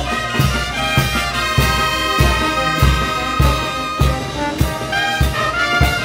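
Live brass band playing: trumpets, trombones and saxophones holding chords over sousaphone bass, with a steady bass-drum beat about every 0.6 seconds.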